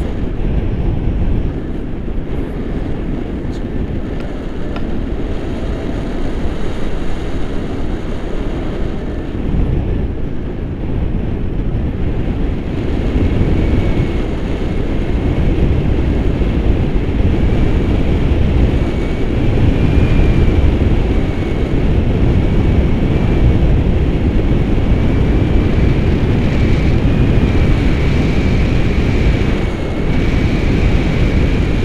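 Wind buffeting an action camera's microphone in flight under a paraglider, a steady low rumble that grows a little louder in the second half. A faint, thin, wavering whistle runs above it from about halfway through.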